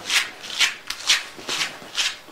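A comb drawn repeatedly through a cheetah's coarse tail fur, about five short brushing strokes, tearing out matted tangles.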